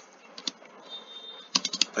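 Computer keyboard being typed on: two keystrokes about half a second in, then a quick run of about five near the end.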